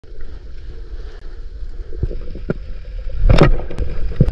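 Underwater sound from a free diver's camera: a steady low rumble of moving water, with a few short clicks near the middle and a louder burst of noise about three and a quarter seconds in.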